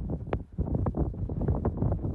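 Wind buffeting a phone's microphone in uneven gusts, a low rumble broken by irregular sharp pops.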